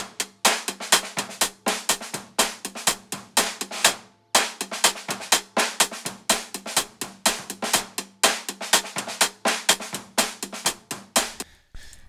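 Playback of recorded, deliberately dirty lofi drums, run through a Waves H-Comp in analog mode 3, which is meant to tuck the drums into the background. It is a fast, even run of hits, about four to five a second, that breaks off briefly about four seconds in, starts again, and stops shortly before the end.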